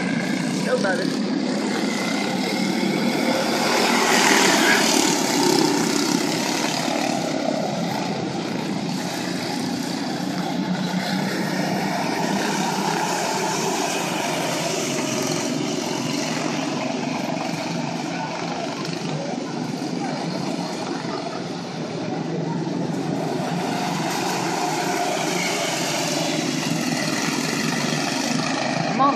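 A pack of quarter midget race cars with small Honda engines running laps together, a steady drone that swells as the pack passes closest, loudest about four to six seconds in.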